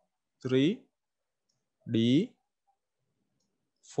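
Speech only: a man's voice saying a few separate syllables, with near silence between them.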